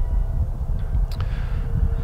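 Low, uneven rumble of wind on the microphone, with a faint click about a second in.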